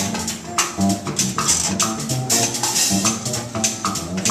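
Live jazz combo playing: upright bass and drum kit keep the groove, congas strike sharply through it, and pitched melody notes sound above.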